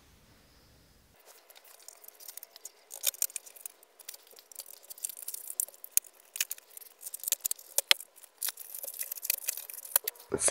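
Clear plastic blister tray and cardboard box insert being handled and pulled out of a toy box: irregular crackles and light clicks, starting about a second in.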